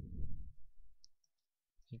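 A few faint, short computer keyboard keystroke clicks about a second in, as text is edited, after a low muffled noise in the first second.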